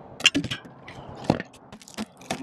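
A few sharp knocks and clatters at uneven intervals, the loudest about a quarter second in and another just past a second in.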